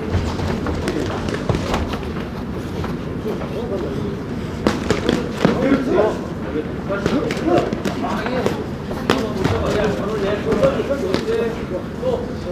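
Boxing gloves striking guards and bodies in a live exchange, with sharp thuds clustered about four to six seconds in and another near nine seconds, over indistinct voices in the hall.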